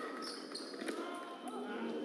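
Fencers' feet striking the piste during foil footwork: two sharp stamps, about a second in and again half a second later, over voices in the hall.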